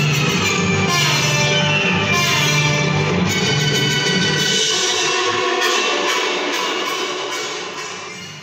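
Music with sustained tones, fading out over the last few seconds.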